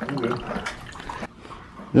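Keurig single-cup coffee brewer dispensing a stream of coffee into a mug: liquid running and splashing into the cup.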